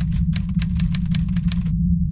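Typewriter keys clacking in a quick run of about a dozen strikes, stopping shortly before the end, over a steady low drone.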